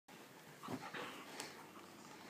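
A puppy making a few short vocal sounds while tugging at a sock held in its mouth, with a sharp click about one and a half seconds in.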